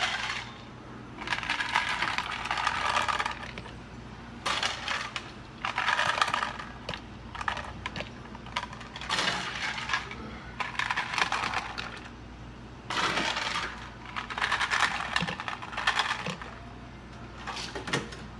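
Ice cubes scooped and poured into plastic cups, clattering and rattling in repeated bursts of a second or two each.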